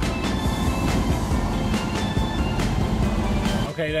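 A passenger train moving along a station platform: a steady, loud rumble of wheels on rails that starts suddenly and cuts off just before the end, with faint background music under it.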